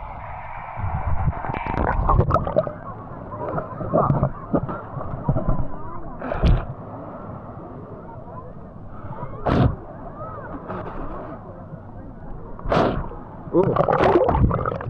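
Sea water sloshing and gurgling against a waterproof action camera as it dips under and rides the surface, muffled at first while it is submerged. Three sharp splashes hit it, about three seconds apart.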